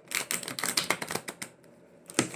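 A deck of tarot cards being riffle-shuffled on a tabletop: a fast, fluttering run of card flicks that lasts about a second and a half, then dies away.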